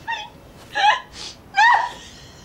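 A woman's fit of hysterical laughter: three high-pitched, gasping bursts about a second apart.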